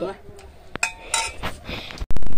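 Metal ladle and spoons clinking against an aluminium cooking pot and plates as curry is dished out, a few short sharp clinks.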